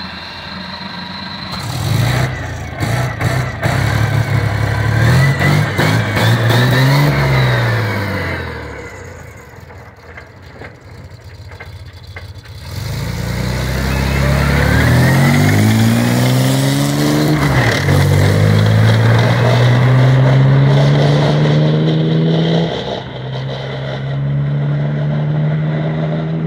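Tracked light tank's engine revving up and down, then dropping back before the tank pulls away, its note climbing in several steps as it accelerates.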